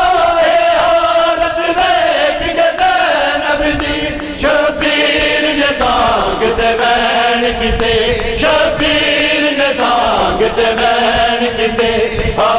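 A group of men chanting a Punjabi noha (Shia lament) in unison, drawing the words out into long held notes that change pitch every couple of seconds.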